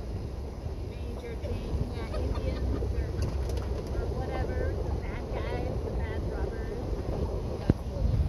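Steady low rumble of a vehicle driving along a dirt road, heard from inside it, with faint indistinct talking over it and one sharp click near the end.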